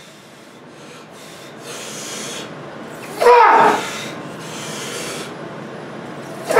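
A man breathing hard in long, forceful breaths, with one loud strained grunt about halfway through: the effort of bending a 3/4-inch steel bar by hand.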